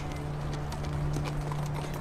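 Faint, irregular hoof clip-clops of a horse over a steady low drone of background score.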